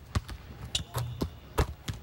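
Basketball bouncing on a hardwood court, about six sharp, unevenly spaced bounces.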